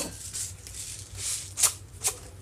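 Urad dal and dried red chillies roasting in a nonstick frying pan, giving a few short, soft crackles and hisses.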